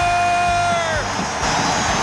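Arena crowd cheering a goal, with a long steady horn note that drops off about a second in, leaving the crowd noise.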